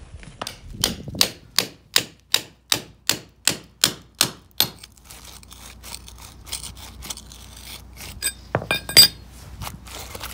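About a dozen quick, evenly spaced hammer blows on brickwork, knocking loose the old brick-on-edge coping on a garden wall. Then quieter scraping and clinking of loosened brick and mortar, with a few sharper knocks near the end.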